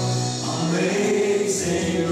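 A live worship band playing a hymn: a man singing lead over acoustic guitar and drums, with more voices singing along. The sung notes are held and change pitch about half a second in.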